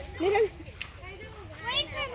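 Children's voices calling and shouting while they play, with one loud, high, wavering shout near the end.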